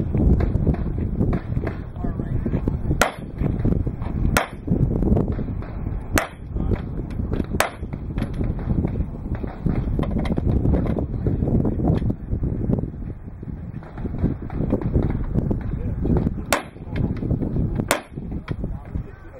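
Handgun shots fired during a practical-shooting stage: about six sharp cracks, spaced a second or two apart in the first half and again near the end, over a steady low rumble.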